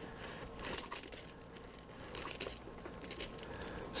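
Faint crinkling of thin clear plastic laminating film as it is curled around a foam hull and trimmed with scissors, in a few short scattered rustles.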